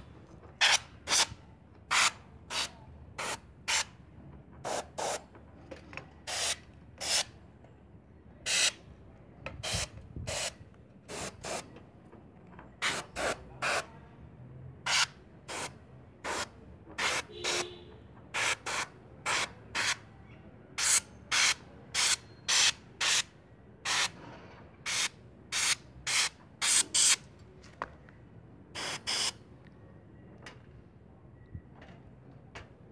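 Short puffs of compressed air hissing from a handheld blow gun fed by a homemade air compressor, blowing dust out of a PC. The puffs come in dozens of separate bursts, one or two a second and some in quick pairs.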